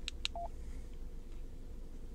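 Two quick clicks of buttons pressed on a Yaesu FTM-100DR radio's control head, followed by a short key beep from the radio, over a steady low hum.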